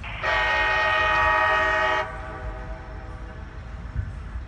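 Air horn of CSX SD40-3 locomotive No. 4289 sounding one steady blast of just under two seconds, starting just after the opening and cutting off sharply. A low rumble from the train runs underneath.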